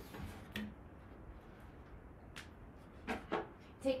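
A few soft footsteps and light knocks, scattered through a quiet stretch of room tone, as a person walks across the floor.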